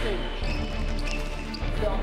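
Background music with a steady deep bass line, with indistinct voices underneath it.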